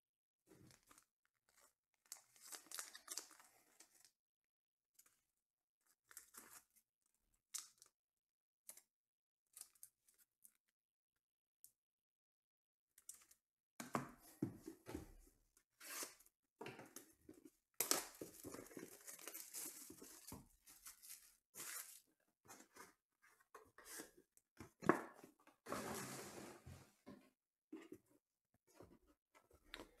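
Plastic wrapper being cut and torn off a sealed trading card box, crinkling and tearing in dense spells through the second half. Before that, only a few faint handling clicks.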